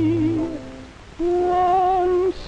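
Slow big-band ballad from a 1940s dance orchestra and crooner: a held note with vibrato fades out about half a second in. After a brief lull, a new, higher sustained note with vibrato begins a little over a second in.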